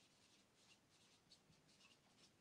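Near silence, with the faint, short, irregular squeaks of a marker pen writing on a whiteboard.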